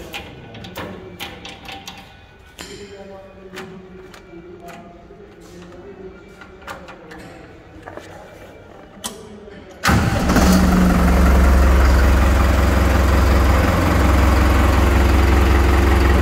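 Scattered light clicks, then about ten seconds in the New Holland 5630 tractor's diesel engine starts with a sudden jump in loudness and runs on steadily with a deep low rumble.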